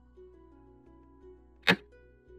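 Soft background music with plucked-string notes. Near the end comes a single sharp click: the move sound effect of a xiangqi piece being placed on the board.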